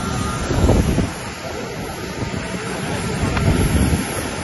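Steady jet aircraft noise on an airport apron, with wind buffeting the microphone in gusts, strongest about half a second in and again near the end.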